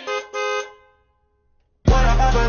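Two short car-horn beeps in the song's track, the second a little longer, ringing out into about a second of silence. Then the hip-hop beat comes back in loud, with heavy bass, just before the end.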